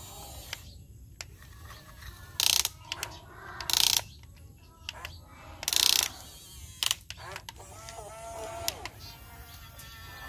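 Huina radio-controlled toy excavator's small electric motors and gears whirring in three short, loud bursts as the boom and bucket move, with a sharp click about seven seconds in.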